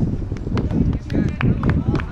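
Indistinct voices of beach volleyball players calling out across the courts, with short sharp clicks scattered through.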